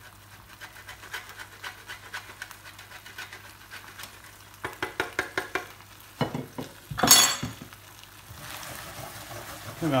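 Parmesan grated on a box grater over a pan of risotto: quick, regular scraping strokes, faint at first and louder about halfway through. A sharp knock about seven seconds in is the loudest sound, and near the end the rice is stirred in the pan with a spatula.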